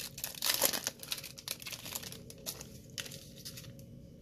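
Plastic wrapper of a 2020-21 Donruss basketball card pack being torn open and crinkled. The crackle is loudest in the first second, then thins out.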